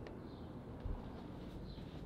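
Faint outdoor ambience coming in through an open window, with a few faint, short bird chirps.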